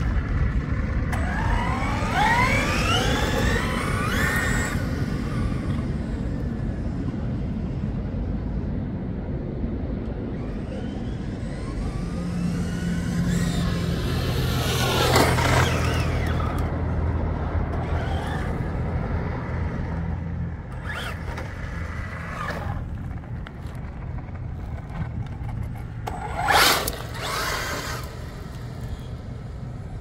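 Traxxas Ford Raptor-R RC truck's brushless electric motor whining up and down in pitch as the truck accelerates and slows through passes, over a steady low rumble. Several short bursts of throttle come in the second half, the loudest about 26 seconds in.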